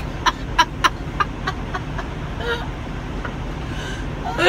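A woman laughing breathlessly in short, pulsed bursts, about three a second, that fade out after about two seconds. Under it runs the steady low drone of a moving semi truck's cab.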